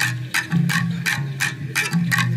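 Bamboo tube instruments played together: sharp clicking strokes about three a second over low held bass notes that change pitch.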